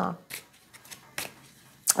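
A few brief, soft sounds of a tarot card deck being handled in the hand, in a pause between a woman's words.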